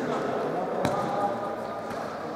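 A futsal ball struck once with a sharp thud a little under a second in, inside an indoor sports hall, over players' voices.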